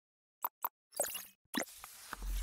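Sound effects of an animated logo intro: two quick pops about half a second in, then two longer, brighter hits that die away, about a second in and near the end.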